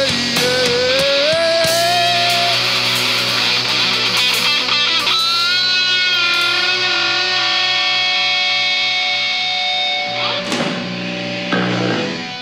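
Live rock band playing the instrumental end of a song: distorted electric guitars, electric bass and drums, with a long held guitar note in the middle. The music thins out near the end as the song closes.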